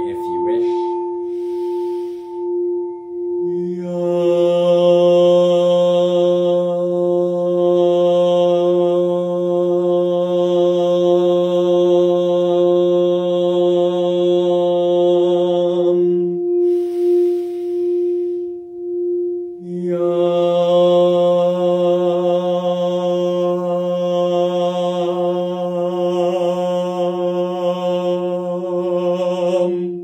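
A singing bowl rimmed with a wooden mallet, sounding one steady tone that pulses slowly as the mallet circles. About three and a half seconds in, a man's voice joins with a long held chanted note, stops for a breath after about thirteen seconds, and comes back with another long note about twenty seconds in.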